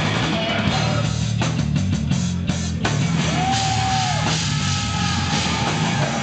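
Brutal death metal band playing live: heavily distorted guitar and bass over fast drumming. The first half has a choppy stretch of rapid stop-start strokes, and about halfway through a high held tone bends up and back down.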